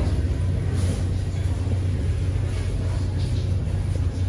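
A steady low rumble with a faint hiss above it.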